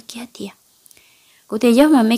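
Speech only: a voice narrating a story in Hmong, breaking off for about a second midway before carrying on.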